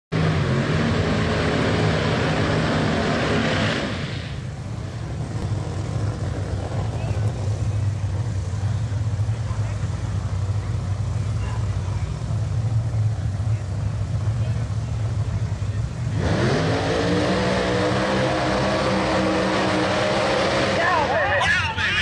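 Drag race car engines: a loud, high-revving stretch for the first four seconds, then a steady lower rumble, then revving up again about sixteen seconds in with a rising pitch that levels off, loud through the burnouts. An announcer's voice comes in over the engines near the end.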